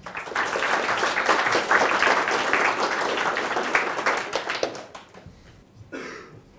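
An audience applauding: many hands clapping together, starting all at once and dying away about five seconds in.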